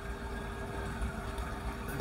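Faint police siren in the distance, heard as a thin, steady tone under low background noise.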